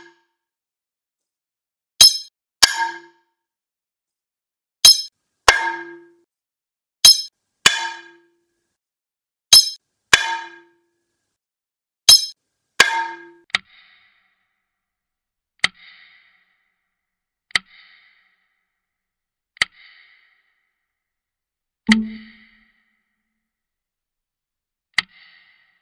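Sharp metallic clangs with a short ring, struck in pairs about every two and a half seconds, then from about halfway single lighter metallic pings about every two seconds, one heavier strike near the end.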